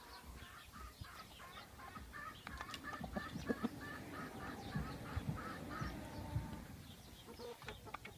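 Tringjyrshe chickens feeding in a flock. One bird clucks in a steady run of short notes, about three a second, for most of the first six seconds. Scattered sharp taps are heard under the clucking.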